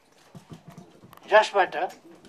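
A man's voice speaking a short phrase in Nepali, the talk of a formal speech. It is preceded by a few soft, low knocks under a second in.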